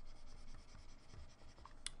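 Faint scratching of a stylus on a drawing tablet as a run of short back-and-forth hatching strokes is drawn.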